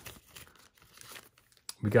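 Faint crinkling and crackling of a trading-card pack wrapper as it is torn open and peeled back from the cards, ending as a voice starts near the end.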